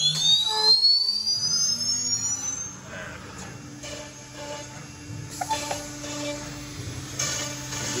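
CNC router spindle spinning up with a rising whine that climbs steeply and fades out about three seconds in, then running at speed with a steady hum. From about five seconds in there are bursts of cutting noise as a 5 mm cutter works the board, cutting 8 mm Domino slots.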